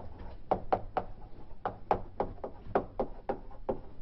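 Chalk tapping and clicking against a blackboard as an equation is written: a quick, irregular run of sharp taps, more than a dozen.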